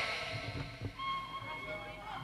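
Gambang kromong ensemble music, faint in a short gap between sung lines, with a thin held melodic note coming in about a second in.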